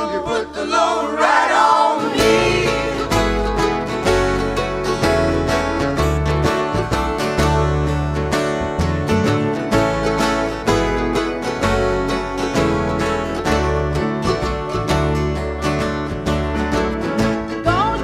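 Live acoustic band playing an instrumental break: strummed acoustic guitars, mandolin and upright bass with a steady beat. The bass and rhythm come in about two seconds in, as a sung line fades out.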